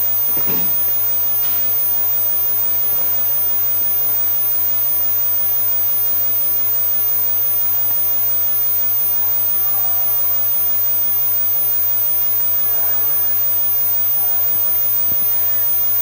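Steady electrical hum and hiss, unchanging throughout, with no other sound standing out.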